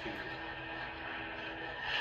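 Crimson Dawn Neo Core neopixel lightsaber's sound board playing its steady blade hum through the hilt speaker, rising to a louder swell near the end.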